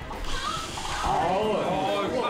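Several onlookers' voices rising and falling together in a drawn-out "ooh" of suspense, overlapping, loudest in the second half.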